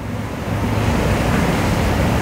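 Rushing, wind-like noise on a handheld microphone, growing louder about half a second in: handling and breath noise as the microphone is taken up by someone about to speak.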